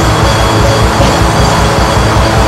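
Instrumental atmospheric black metal: a dense, loud wall of distorted guitars over a fast, steady kick-drum pulse, with no vocals.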